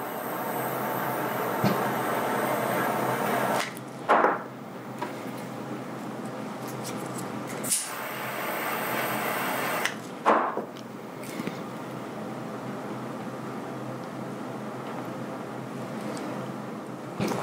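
A small handheld butane torch burning with a steady hiss while it heats an arrow insert for hot-melt glue. The hiss is louder for the first few seconds, then quieter. A few short knocks and clicks come from handling, at about four, eight and ten seconds in.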